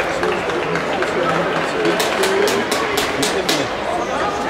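A quick run of about seven sharp hand claps, about four a second, starting halfway through, over the chatter of a crowd.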